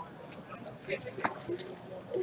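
Clear plastic bag crinkling as it is handled and folded over, a run of faint, scattered crackles and clicks.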